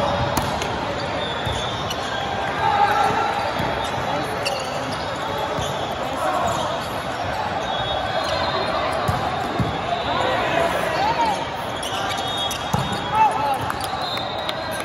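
Indoor volleyball rally: the ball struck by hands with sharp smacks and thuds, sneakers squeaking on the court, and players calling out over the steady chatter of a large, reverberant hall.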